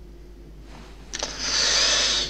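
A man breathing out hard: a loud, breathy burst of air that starts about a second in, after a stretch of low steady room hum.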